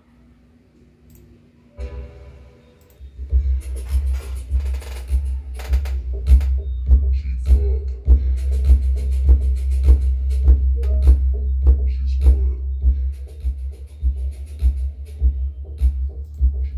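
Bass-heavy music played through a 12-inch Ground Zero GZTW 12 MK2 car subwoofer mounted in a plastic paint bucket as a makeshift enclosure, the deep bass loudest. The music starts about two seconds in and runs on with a steady beat.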